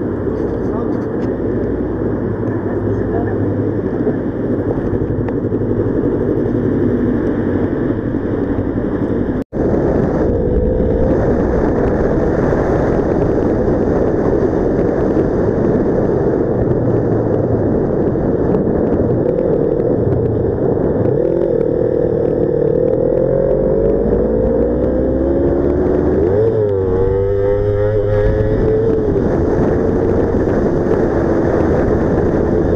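Motorcycle engine running under a steady rumble of road and wind noise on a helmet camera, with a brief dropout about nine seconds in. Later the engine note climbs and falls several times as the rider accelerates and shifts up through the gears.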